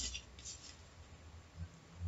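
Pen scratching on paper in a few short, faint strokes, mostly in the first second, as a mark is made against a protractor.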